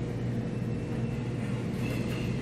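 Room tone: a steady low hum with a faint even hiss and no other events.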